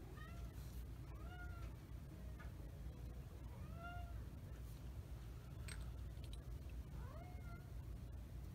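A house cat meowing four times, each a short call that rises and falls in pitch, the last near the end. A single light click falls between the third and fourth meows.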